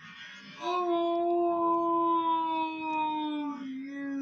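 A yell slowed down in a slow-motion replay, stretched into one long, low, drawn-out moan, played through a TV speaker. It starts about half a second in and drops slightly in pitch near the end.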